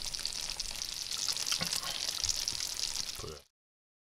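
Injected chicken drumsticks sizzling and crackling in a frying pan, bubbling in the watery liquid the meat has released. The sizzle stops abruptly near the end.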